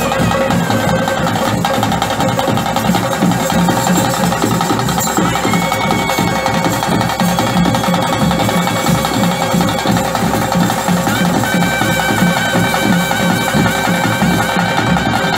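Traditional Tulu Bhuta Kola ritual music: a seated ensemble drumming densely and continuously, with a wind instrument holding long, wavering notes over it near the start and again near the end.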